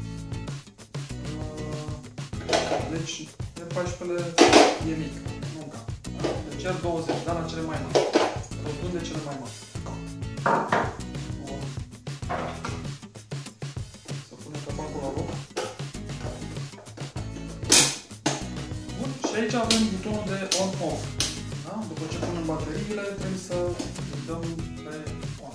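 Scattered sharp plastic clicks and knocks as the hard plastic housing of an automatic pet feeder is handled, the loudest about four and a half seconds in and near eighteen seconds, over continuous background music.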